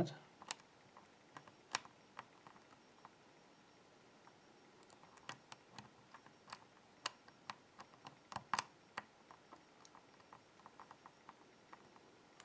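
Faint, irregular small metallic clicks of a hook pick working the spring-loaded pins inside a BKS euro-cylinder lock held under a tension wrench, coming more often in the middle of the stretch.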